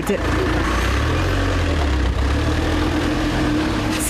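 Police van's engine running as it pulls away: a steady low rumble that swells and eases midway, with a steady hum above it.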